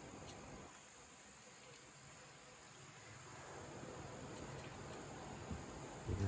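Faint, steady high chirring of crickets.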